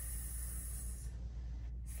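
A woman making a long hissing "sss", the sound of the letter S, which fades out about a second in.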